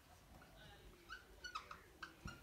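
Faint squeaks of a marker writing on a whiteboard: a few short squeaks in the second half, otherwise near silence.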